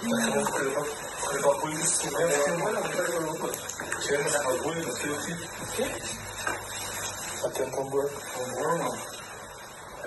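Speech: men talking in Portuguese.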